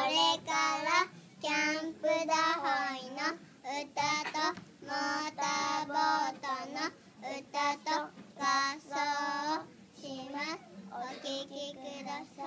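Young children singing a song in short phrases with held notes and brief breaths between them.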